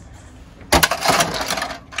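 A plastic toy crate on a Monster Jam Blastin' Bones playset snaps open with a sharp clack about three-quarters of a second in. A clatter of small plastic bones scattering onto a wooden deck follows for about a second.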